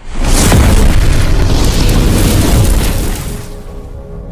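Cinematic explosion sound effect from a logo intro: a sudden loud boom that rumbles on for about three seconds and fades near the end, as held musical tones come in.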